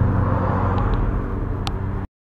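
Cars in a convoy driving slowly past, a steady low engine rumble that slowly fades. A few short high chirps sound about halfway through and again near the end.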